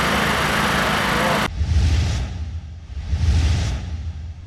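Steady outdoor din of a running motor with faint voices, cut off abruptly after about a second and a half. It is followed by a low rumble that swells and fades.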